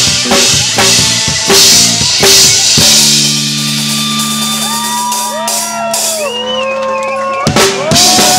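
A live punk band playing: pounding drums with distorted electric guitar. About three seconds in the beat stops on a held, ringing chord, with high wavering tones sliding over it. Near the end the full band crashes back in on drums.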